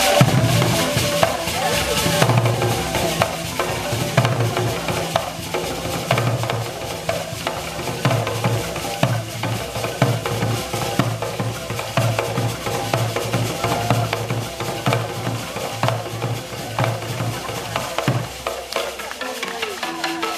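Traditional drums beaten in a fast, driving rhythm, deep booming strokes with sharper slaps over them, stopping shortly before the end.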